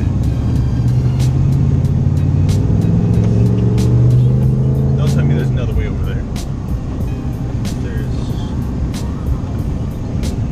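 Pickup truck engine heard from inside the cab, revving up under hard acceleration through deep snow for about five seconds, then dropping off as the throttle is let go.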